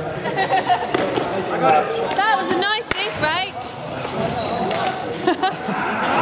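Trainers squeaking on a sports hall floor as players cut and change direction, with a burst of quick squeaks around two to three seconds in and a sharp knock in the middle of them. Players' voices call out in the echoing hall.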